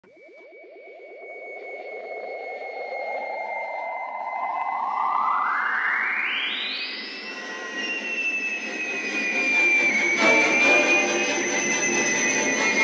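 Synthesized electronic sound effect: a fast-pulsing whirr fades in and glides steadily upward in pitch for about seven seconds, then settles into a high held whistle. Music comes in underneath about ten seconds in. It introduces Ture Sventon's flight.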